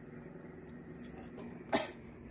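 A single short cough near the end, over a steady low background hum.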